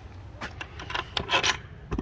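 A few light metallic clicks and rattles from a freight trailer's rear-door lock handle and latch being handled, over low wind rumble on the microphone.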